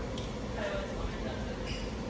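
Faint, indistinct speech over a steady low room background.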